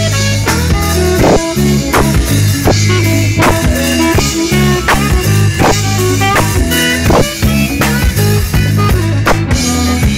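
Live rock band playing a steady groove: drum-kit beat, bass line, congas and keyboard, with a saxophone playing the melody at the microphone.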